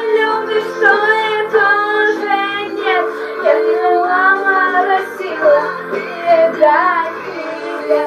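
Music: a pop song in which a girl's voice sings a wavering melody over steady held backing chords.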